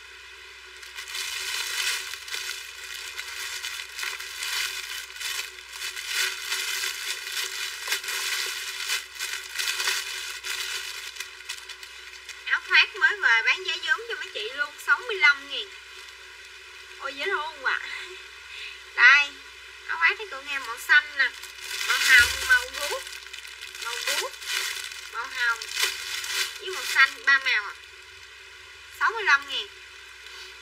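Plastic garment bags and clothes crinkling and rustling as they are handled, a dense, continuous crackle for the first ten seconds or so. From about twelve seconds in, short bursts of a woman's voice come and go over the handling noise.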